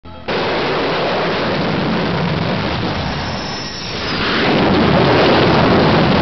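Jet aircraft engine noise, a steady rushing sound that dips briefly about three and a half seconds in and then swells again.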